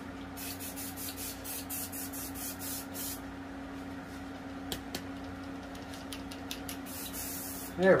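Aerosol spray-paint can hissing in a rapid series of short bursts for the first few seconds, then again in a few bursts near the end, over a steady low hum.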